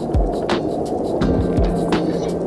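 Background music with a beat: deep drum hits and held bass notes, with light high ticks over them.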